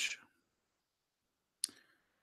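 A single sharp click of a computer keyboard key about one and a half seconds in, otherwise near silence.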